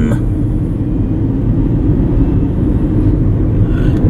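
Steady low rumble of a car driving along, with engine and road noise heard from inside the cabin.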